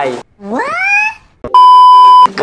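A loud, steady 1 kHz test-tone beep, the tone that goes with TV colour bars, starting about a second and a half in. Before it, a single pitched sound that rises steeply in pitch over about a second.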